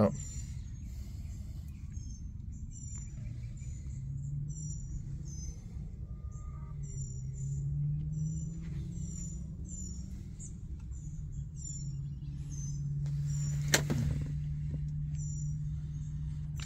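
Small birds chirping over and over in short high chirps above a steady low hum, with one sharp knock near the end.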